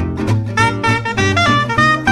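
Swing jazz band playing an instrumental break: a saxophone plays a lead line of quick, changing notes over a stepping bass line and rhythm section.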